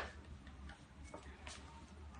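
A few faint clicks and knocks as a glass bottle is picked up off a tiled floor and handled, over a steady low hum.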